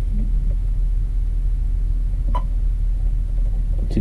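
Steady low rumble in a John Deere 6170R tractor's cab, with a single short click and beep a little past two seconds in as a button on the armrest keypad is pressed.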